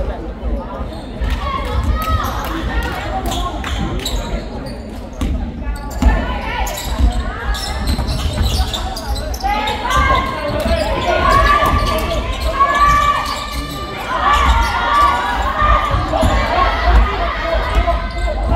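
A basketball dribbled on an indoor court, with players' footsteps. Voices call out across the hall, mainly in the second half.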